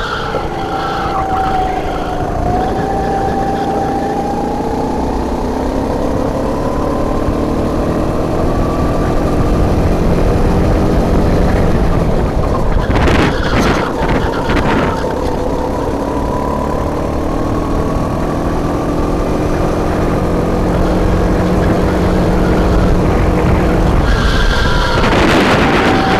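Racing kart's engine heard from on board at full throttle, its pitch climbing steadily with speed, breaking up briefly about halfway through, then climbing again before dropping near the end as it comes off the power, over a steady low rumble of vibration and wind.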